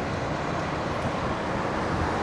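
Steady outdoor road-traffic noise: an even rumbling hiss with no distinct events.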